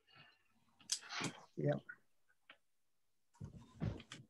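Quiet video-call audio between remarks: a brief spoken "yeah" and a few short clicks and mouth sounds, with dead silence between them.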